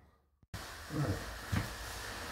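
Half a second of dead silence at an edit cut, then a steady hiss begins suddenly and a man's voice says "Right" over it.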